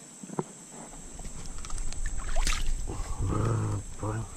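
A man's drawn-out low grunt, held for about a second near the end, over a low rumble of handling noise on the moving camera's microphone, with a single sharp click about halfway through.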